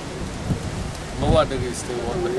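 Steady hiss of outdoor background noise with a low rumble, broken a little past the middle by one short phrase from a man's voice.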